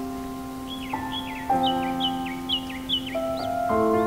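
Soft piano playing slow, sustained chords over recorded forest bird song. A bird gives a quick series of short, sharp calls, a few a second, from about a second in until shortly before the end.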